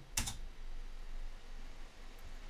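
A single computer key press, the Enter key, heard as one short sharp click just after the start, followed by faint room noise.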